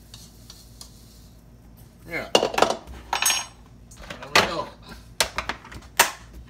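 A spoon scraping and knocking against a bowl as a salt and white pepper blend is emptied into a storage container. The sharp clinks come mostly in the second half.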